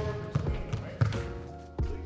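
Basketball dribbled on a hardwood gym floor, several bounces at uneven spacing, with background music.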